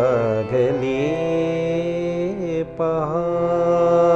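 A man singing long, held notes with wavering ornaments, accompanied by a harmonium's steady sustained notes; the voice breaks off briefly a little past halfway and comes back in.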